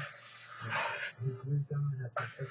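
Broad felt-tip marker drawn across paper in one long stroke: a dry hiss lasting about a second and a half, with a voice speaking low underneath.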